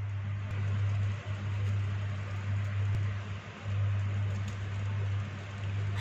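Plastic cling film rustling as it is peeled away from a set pudding, over a steady low hum.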